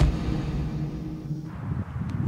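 A sharp click, then a low, sustained drone from the film's score that stops about one and a half seconds in. A low, uneven outdoor rumble follows, like wind on the microphone.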